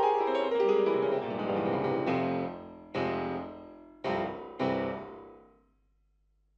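Fazioli grand piano played solo: a dense run of notes, then three struck chords, the last two about half a second apart. Each chord is left to ring and die away, and the last one ends the piece.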